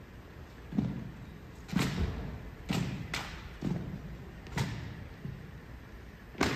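Drill team's rifle handling: six sharp slaps and thuds of hands striking and catching drill rifles and rifle butts meeting the floor, roughly a second or less apart, echoing in a large gym.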